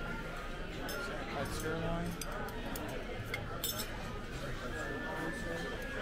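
A few clinks of a metal serving spoon and fork against a china platter as steak is served, over steady background chatter in a restaurant dining room.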